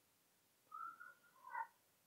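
Near silence, with a faint, brief high-pitched chirp of wavering pitch about a second in.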